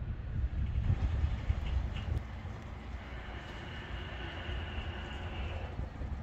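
Wind buffeting the microphone, a low uneven rumble. A faint steady high whine joins about halfway through and stops just before the end.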